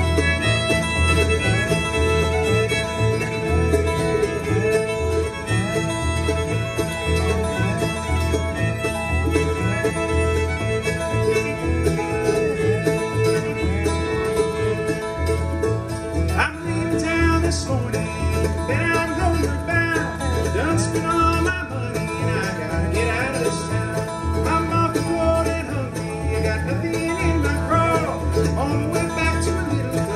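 Bluegrass string band playing an instrumental introduction: fiddle, acoustic guitar and upright bass, with the bass keeping a steady even pulse.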